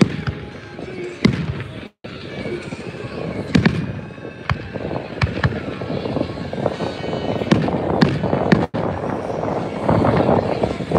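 Aerial fireworks bursting overhead: a run of irregular bangs and pops, with two brief dropouts in the sound.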